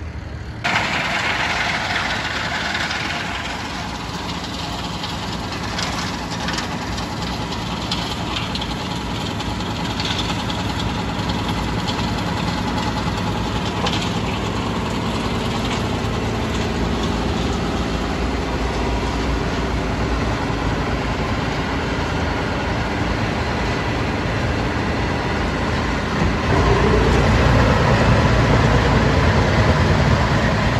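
Red Massey Ferguson tractor running a PTO-driven wood chipper, the engine working steadily under load as the chipper blows chips out of its chute. The machine gets louder and deeper near the end.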